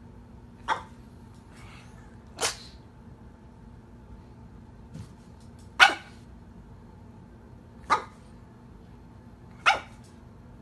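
A pug lying asleep on its side gives five short barks in its sleep, spaced irregularly about two to three seconds apart; the one in the middle is the loudest.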